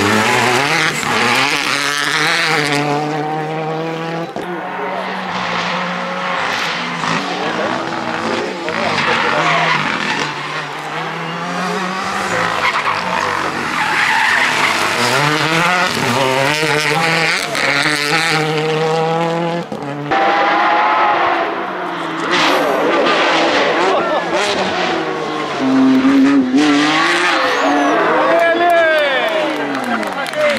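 Rally cars passing one after another at racing speed: engines revved hard, pitch climbing and dropping sharply with each gear change over several separate passes, including Renault Clio rally cars.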